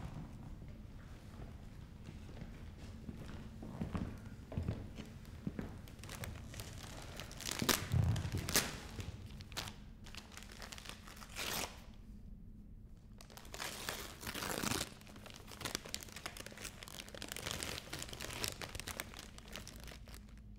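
Gift wrapping paper crinkling and tearing as a present is unwrapped by hand: irregular rustles with several louder rips, the biggest near eight seconds with a dull thump and another long one around fourteen seconds.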